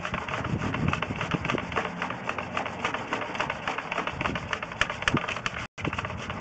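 Sewer inspection camera's push rod being fed fast down a drain pipe, a continuous irregular clicking and rattling of several clicks a second, with a very brief cut-out near the end.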